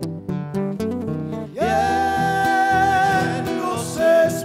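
Chamamé song: a short run of plucked acoustic guitar notes, then a man's singing voice slides up into a long held note over the guitar, held for about two seconds.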